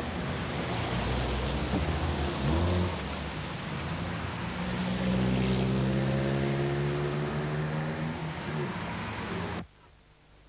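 Street traffic: a steady rumble of passing cars, with one vehicle's engine growing loud and passing by over a few seconds in the middle. The sound cuts off suddenly near the end.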